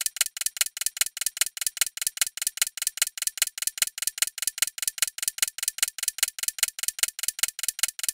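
Countdown-timer sound effect: a clock ticking rapidly and evenly, about six ticks a second, marking the time left to answer.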